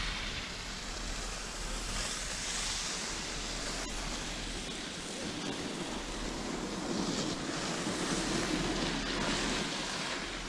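Wind buffeting the microphone on a moving chairlift, a steady rush that swells and eases in gusts every few seconds.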